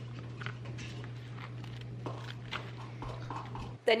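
A metal spoon stirring and scraping a thick paste in a small plastic container, with irregular clicks and taps about two or three a second. A steady low hum runs underneath and cuts off near the end.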